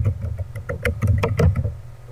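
Computer keyboard typing: a quick run of separate keystroke clicks, several per second.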